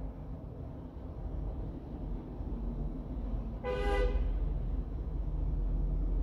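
A single short vehicle horn toot, about half a second long, nearly four seconds in, over a steady low rumble.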